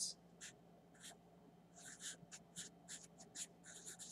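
Felt-tip marker writing on paper: a run of short, faint strokes, several a second, as a line of symbols is written out.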